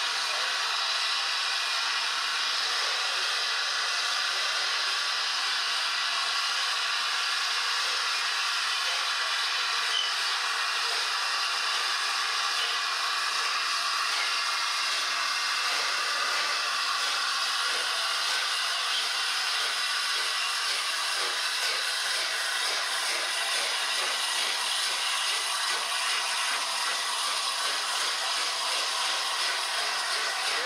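LNER Class A3 Pacific steam locomotive 60103 Flying Scotsman hissing steam, a loud, steady hiss.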